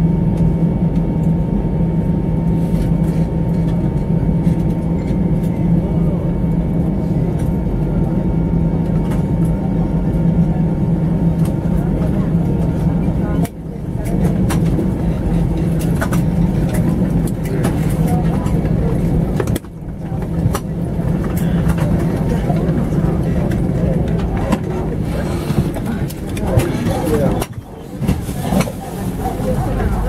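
Steady low hum of an Airbus A320's engines and cabin as the airliner taxis after landing. The level drops out briefly three times, about a third, two-thirds and nine-tenths of the way through.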